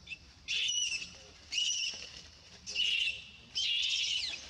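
An animal's high-pitched call, repeated four times about once a second, each call about half a second long.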